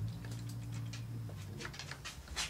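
A steel scribing tool ticking and scratching as it is drawn around the edge of a mother-of-pearl inlay on a wooden fingerboard, scoring the outline for routing. Faint small clicks grow more frequent about one and a half seconds in, under a low steady hum that stops at about the same point.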